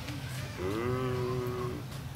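A cow mooing: one long, steady call that starts about half a second in and lasts just over a second.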